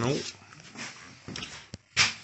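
A man's drawn-out "nope" falling in pitch and trailing off, then faint handling noises with one sharp click near the end.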